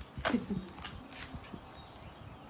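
Card pages of a pop-up book being turned and unfolded: a few crisp rustles and flaps of stiff paper, with a brief vocal sound near the start.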